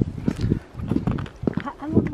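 Wind buffeting a camera microphone that has no windmuff, with irregular footsteps on a cleared sidewalk.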